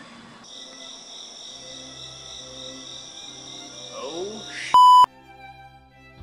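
A steady, high-pitched chirring of night insects over faint low music. Near the end comes one loud, pure electronic bleep lasting about a third of a second.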